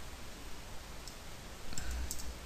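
Steady low hum and hiss of a quiet recording room, with a few faint clicks from computer input near the end as code is edited.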